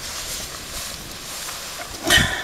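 Steady outdoor background hiss with no distinct events.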